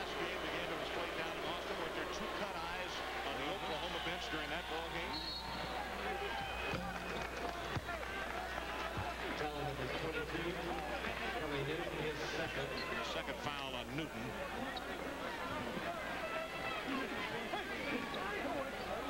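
Arena crowd noise with many voices during a basketball game, and a short, high referee's whistle about five seconds in, stopping play for a foul.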